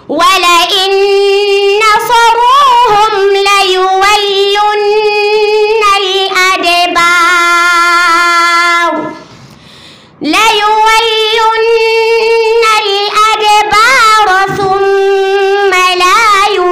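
A young girl reciting the Qur'an in a melodic, drawn-out tajwid style, with long held notes: one long phrase, a pause of about a second some nine seconds in, then another long phrase.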